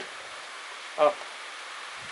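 A single spoken word over a steady background hiss; no tool, ratchet or engine sound stands out.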